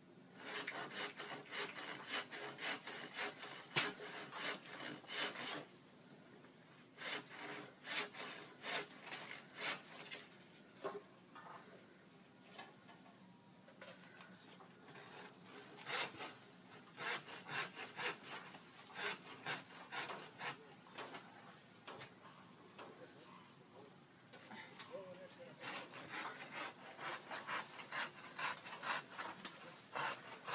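Hand saw cutting through a tree's wood, in several bouts of rapid back-and-forth strokes with short pauses between.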